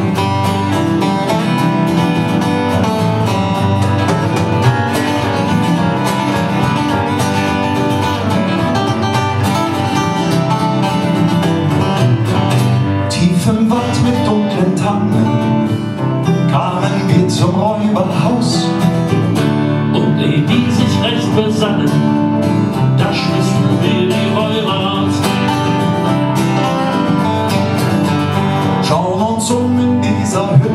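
Live acoustic folk band playing: strummed and picked acoustic guitars with other acoustic instruments, a steady passage with no clear words sung.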